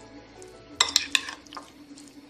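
A metal spoon stirring a thick beetroot-and-curd mixture in a glass bowl, the spoon clinking against the glass about four times in quick succession about a second in.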